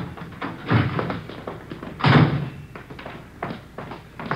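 Radio-drama sound effects of car doors opening and slamming shut, among smaller knocks and thumps. The loudest thump comes about two seconds in.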